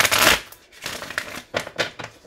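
A deck of tarot cards being riffle-shuffled by hand: one dense riffle in the first half second, then several short card snaps and taps.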